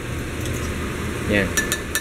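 A metal spoon stirring in a glass pitcher of melon drink, clinking against the glass a few times near the end, over a steady low hum.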